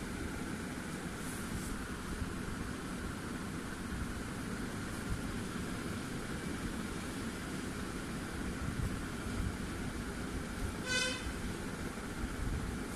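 Steady background noise of road traffic, with a short vehicle horn toot near the end.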